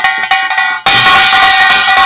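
Kkwaenggwari, the small hand-held brass gong of Korean pungmul, struck rapidly with a mallet in a demonstration rhythm. Short, clipped strokes come first, and about a second in louder strokes ring on continuously.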